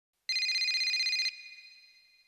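A high electronic ringing tone, like a telephone ringtone, trilling rapidly for about a second and then dying away.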